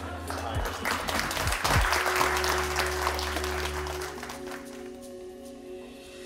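A small audience applauding after the trick's reveal, the clapping fading out after about four seconds. Soft music with long held tones comes in about two seconds in and runs on under it.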